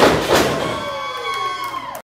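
A wrestler slammed down onto the ring canvas with a loud thud right at the start, a second thud following a moment later. The crowd then shouts and cheers.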